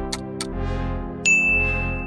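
Countdown ticking sound effect, about four ticks a second, stopping about half a second in, then a loud bell-like ding a little past halfway that rings on one steady high tone as the vote result is revealed, over steady background music.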